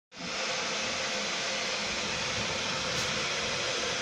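A steady, even hiss, like blowing air or fan noise, with a faint steady tone underneath.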